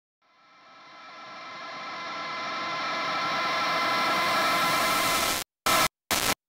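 A droning, noisy intro swell to a metalcore track, fading in from silence over about four seconds. It cuts off sharply near the end and comes back as one short stuttering burst.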